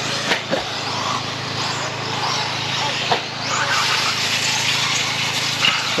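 1/10-scale RC mini truggies racing on a dirt track, their motors revving up and down in short rising and falling sweeps as they accelerate and brake. A few sharp knocks come near the start and about three seconds in, over a steady low background hum.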